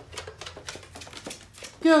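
Dog's claws clicking on a hard floor as it walks, an irregular patter of several clicks a second.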